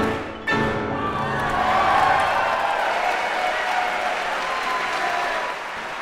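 Two Steinway grand pianos played together strike a loud closing chord about half a second in, and audience applause swells after it and carries on.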